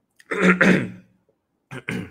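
A man clearing his throat once, loud and brief, before he starts speaking again near the end.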